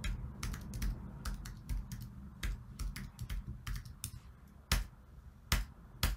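Typing on a computer keyboard: a quick, uneven run of key clicks as a file path is entered, with two louder key strikes near the end.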